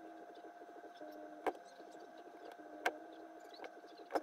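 Two sharp snips of hand-held wire cutters/strippers closing on wire, about a second and a half apart. Under them runs a steady electrical hum.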